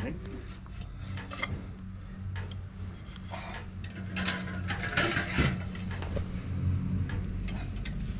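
Scattered small clicks, rattles and rubbing as breeding equipment is handled, over a steady low hum like an idling engine.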